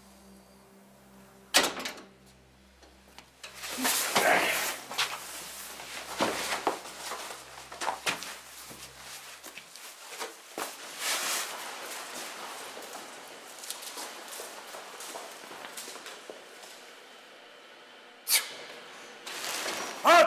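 A sharp bang like a door about one and a half seconds in, then a long stretch of irregular scuffling, rustling and knocks as a person is pinned and tied with rope, with another sharp bang near the end. A low steady hum underlies the first half.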